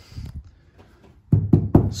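A hand knocking a few times in quick succession on a car floor pan covered in sound-deadening mat, about a second and a half in, to show the deadened floor is super solid.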